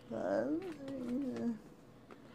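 A woman's voice: one drawn-out, wavering utterance that lasts about a second and a half, then a pause.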